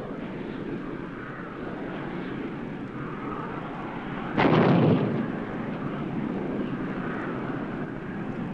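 Steady fighter-aircraft engine noise. About four seconds in comes a sudden, much louder burst that lasts about half a second, then the steady engine noise goes on.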